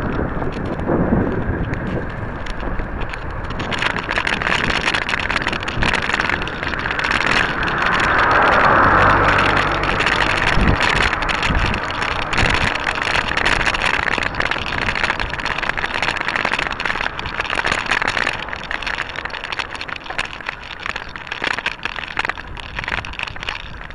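Wind and road noise on the microphone of a bicycle-mounted camera during a ride, broken by frequent knocks and rattles. The noise grows louder about four seconds in and swells for a couple of seconds around the middle.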